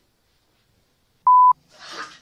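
A single loud electronic beep at one steady pitch, about a quarter second long, a little over a second in, after near silence. A short burst of noise follows near the end.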